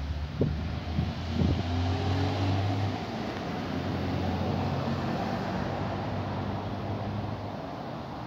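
A car engine running on the road close by, a steady low hum that fades away near the end. A few sharp clicks or knocks come in the first two seconds.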